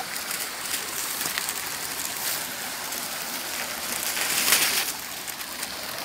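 Water of a small shallow stream flowing steadily over its bed, with a brief louder swell near the end.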